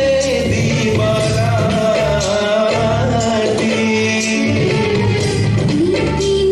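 Song with singing: a sung melody with long held notes over an instrumental backing.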